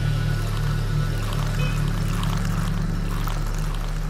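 Low, steady background music drone, with liquid being poured: tea poured into glasses of milk.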